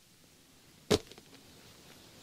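A single sharp knock about a second in, against a near-silent background.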